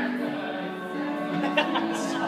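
Several voices singing together in an improvised song, holding notes.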